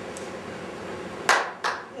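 Two sharp hand claps about a third of a second apart near the end, over a steady low room hiss.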